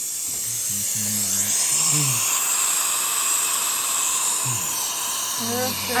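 Dental suction hissing steadily in a patient's mouth during a tooth extraction, with a few short low humming tones underneath.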